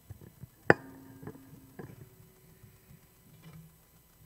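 Metal communion trays clinking as they are lifted and set down: a sharp clink less than a second in that rings briefly, then a second, softer clink that rings on for over a second.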